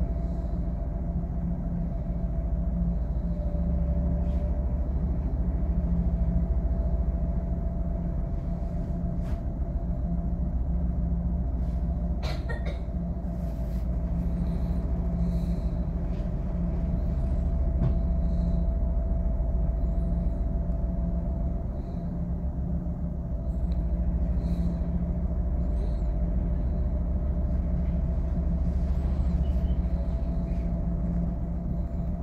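A stopped passenger train's on-board equipment humming steadily over a low rumble, with one sharp click about twelve seconds in.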